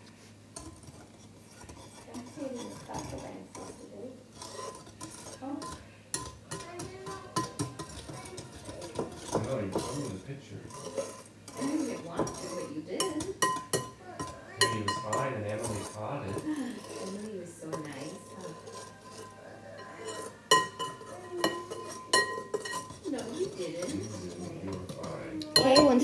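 Wire whisk stirring a dry mix of flour, sugar and salt in a bowl, with quick irregular clicks and scrapes of the wires against the bowl.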